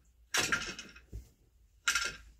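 Two sharp knocks from a wooden floor loom, about a second and a half apart, as the treadles are worked to change the shed.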